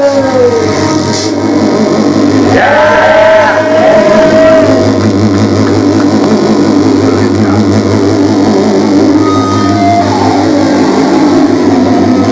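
Loud live noise-rap music with electric guitar over droning electronic backing. A held tone slides up and sustains for a couple of seconds about three seconds in.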